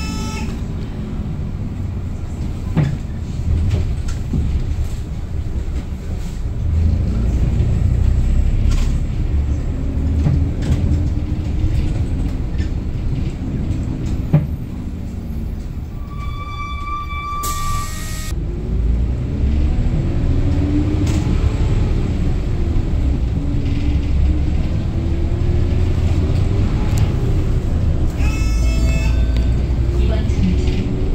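Hyundai New Super Aero City city bus heard from inside the cabin, its engine rumbling low and rising and falling in pitch as the bus accelerates and eases off. The engine is in good condition, with no squeal. A brief electronic beep sounds a little past halfway.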